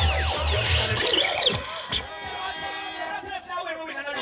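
Reggae sound-system music played by a DJ, with a heavy bass beat under a falling swoop effect. About a second and a half in, the bass and beat cut off suddenly, leaving crowd noise and voices.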